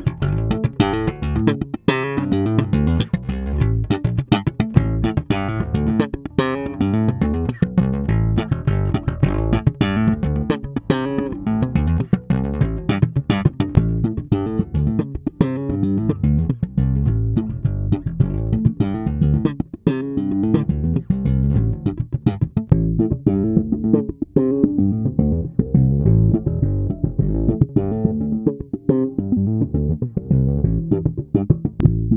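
Electric P-bass with steel roundwound strings, played slap-style with a quick run of sharp thumped and popped notes. The tone knob starts fully open and is then rolled back, so the treble thins out in the later part.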